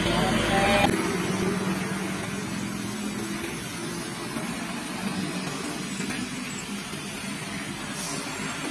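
Heavy diesel trucks and cars driving up a steep road, with a steady low engine note for the first few seconds that then eases into softer passing-traffic noise. A brief louder sound, likely a voice, cuts off abruptly about a second in.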